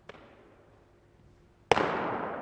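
A baseball popping into a leather glove: one loud, sharp smack near the end that echoes off the indoor facility's walls and dies away slowly. A much fainter tap comes right at the start.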